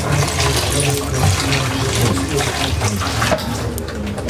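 Low, indistinct voices over a steady rushing noise.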